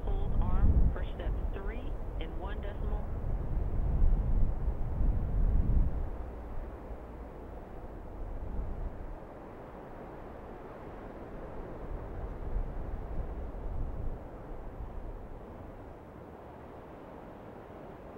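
Static hiss and low rumble of a space-to-ground radio audio line, with faint, indistinct voices in the first few seconds. The rumble drops away about six seconds in, leaving a steady, quieter hiss.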